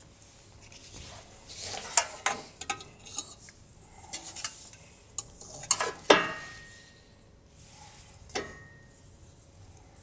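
Handling noise as a flat cut-out shape is hung on a hook and adjusted by hand: a run of small clinks, scrapes and knocks, with a sharper clink that rings briefly about six seconds in and another about eight seconds in.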